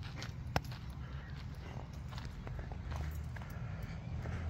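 Quiet footsteps on loose, dry dirt, over a low rumble on the microphone, with one sharp click about half a second in.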